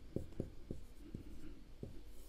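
Marker pen writing on a whiteboard: faint short taps and strokes, about five in two seconds.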